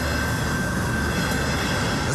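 Passenger train with double-deck coaches passing a level crossing close by: a steady rumble of wheels on rails, with a thin steady high tone above it.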